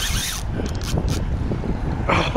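Wind rumbling on the microphone over the mechanical clicking of a spinning reel being worked against a hooked fish.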